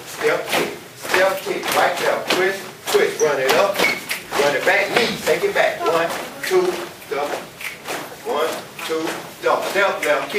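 Speech throughout: a person talking, with no music.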